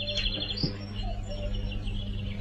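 Small birds chirping in short, rapid trills over a low steady hum.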